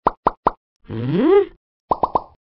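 Three quick cartoon plop sound effects, then a character's questioning hum gliding upward in pitch, then another quick run of plops near the end.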